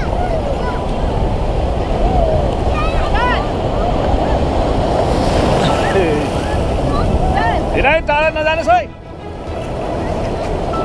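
Surf breaking and foaming water washing around, with wind buffeting the microphone. Over it come people's excited shouts and shrieks, a short run about three seconds in and a louder burst of squeals near the end, after which the sound briefly dips.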